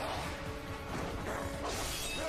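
Logo-intro sound effects: a dense mechanical clatter layered with music, with a swell of hiss near the end.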